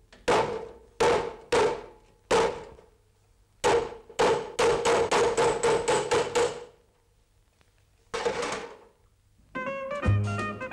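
Hammer blows on a chisel held against corrugated sheet metal, each blow ringing with a metallic tone as it dies away. Four spaced blows are followed by a fast run of about a dozen at roughly four a second, then a pause and one last blow. Jazzy music comes in just before the end.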